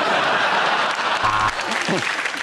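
Studio audience applauding steadily after a joke.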